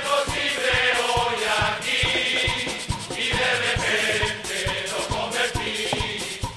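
A large carnival murga chorus singing together in unison over a steady drum beat of about three strokes a second.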